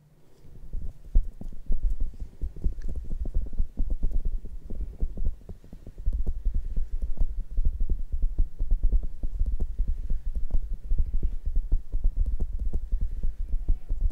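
ASMR ear trigger worked directly on the microphone: a fast, continuous run of soft low thumps and rubbing. It starts about half a second in and grows heavier from about six seconds.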